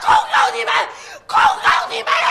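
A woman shouting in Mandarin, loud and strained.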